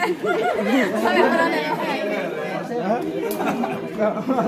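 Several people's voices talking over one another in a steady chatter, with no single clear voice.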